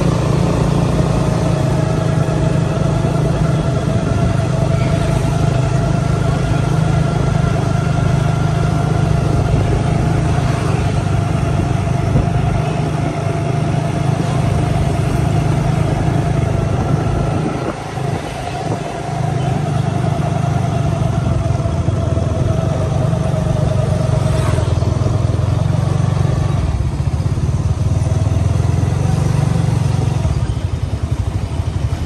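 Small motorcycle engine running steadily under way, with a steady drone and a held tone above it. About two-thirds of the way through it drops briefly, as the throttle eases off, and then picks up again.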